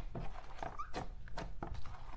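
Slime being squeezed and folded by hand, clear slime pressed around a softer marbled butter slime, giving an irregular string of wet, sticky clicks and pops, about three or four a second, with one short squeak about halfway through.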